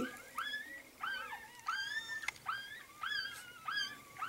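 Newborn Chinese Crested puppy squeaking and whimpering during bottle-feeding: a string of short, high, thin cries, each rising and then falling in pitch, about three a second.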